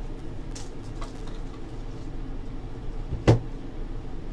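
Hands handling a thick stack of trading cards: faint light ticks of the cards, then one sharp knock about three seconds in, over a low steady electrical hum.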